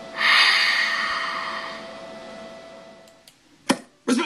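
A loud breathy hiss that swells, peaks just after the start and fades away over about two and a half seconds, over a faint steady hum. A single sharp click near the end.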